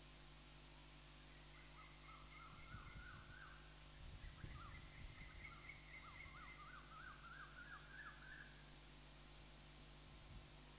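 Faint bird calls: a quick run of short chirps, each rising and falling in pitch, repeated over several seconds, over a steady low hum and a faint low rumble.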